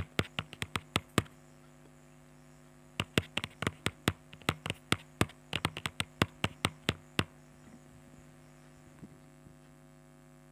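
Typing sound effect: quick irregular key clicks in two runs, one in the first second and a longer one from about three to seven seconds in, over a steady low hum.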